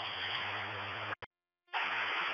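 Open radio-channel hiss with a faint low hum from a public-safety scanner feed. The channel cuts out abruptly about a second in, drops to silence for about half a second, then the hiss comes back.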